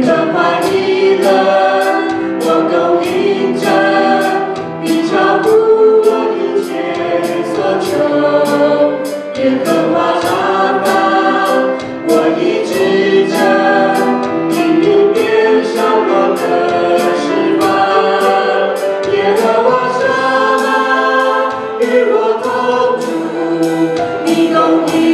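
A live worship band playing a Chinese-language Christian worship song: several voices, women and a man, sing together into microphones over a drum kit. The cymbal or hi-hat strikes keep a steady beat of about two a second.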